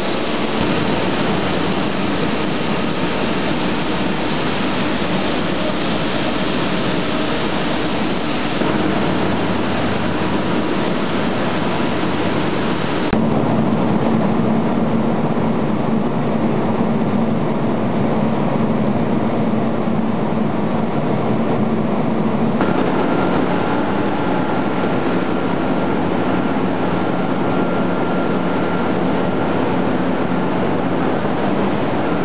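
Loud, steady industrial machinery noise made of several clips joined together, so its character changes suddenly three times. In the first stretch large rotating drums are running. Between roughly the middle third and three-quarters in, a steady low hum sits under a duller rumble.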